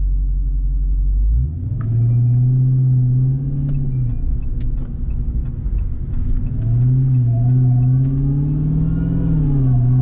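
A Dodge Charger SRT Hellcat Redeye's supercharged V8 is heard from inside the cabin as the car drives off. It rumbles low at first, then pulls away about a second and a half in. The engine note climbs, eases off around four seconds, and rises again to a peak near nine seconds before dropping back.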